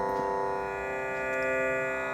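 Soft instrumental background music holding steady, sustained notes.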